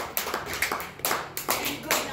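A small audience clapping, the claps uneven and scattered rather than a steady wash of applause.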